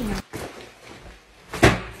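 A backpack dropped onto the floor: one loud thud about one and a half seconds in, after a fainter knock near the start.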